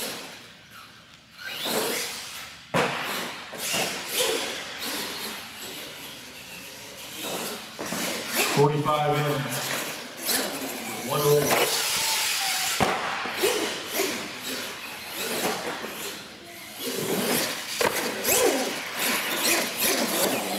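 Radio-controlled monster truck driving on a concrete floor: its electric motor whines as the throttle is worked, tyres scrub on the concrete, and there are a few sharp knocks, with people's voices in the background.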